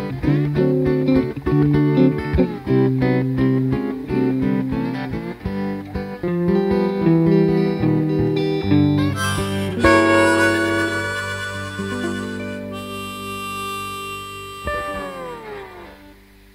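Instrumental blues outro with harmonica and guitar playing together. After about ten seconds it settles into a long held final chord that slowly fades, its notes bending down as it dies away near the end.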